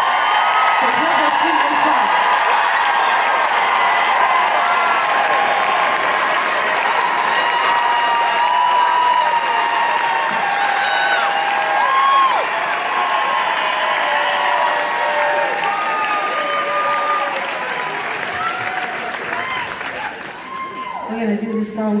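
Concert audience applauding and cheering: steady clapping with many whoops and shouts over it, dying down toward the end.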